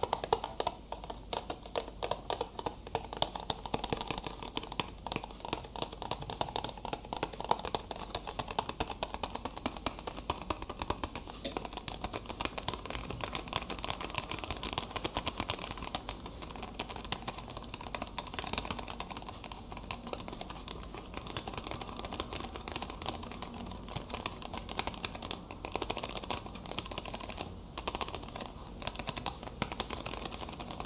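Fingers tapping quickly on a small hard object: a dense, uneven run of light clicks.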